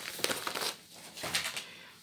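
Plastic-wrapped pack of padded bubble envelopes crinkling as it is handled and set down, with a burst of crinkling at the start and another a little past the middle.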